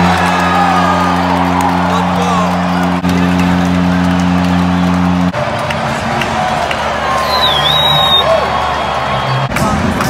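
Arena goal horn for a home-team goal: a loud, low, steady chord that cuts in suddenly and stops about five seconds later, over a cheering crowd. Arena music then plays over the cheering.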